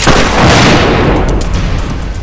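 A loud blast sound effect that hits suddenly and dies away over about a second and a half, over a dramatic music score.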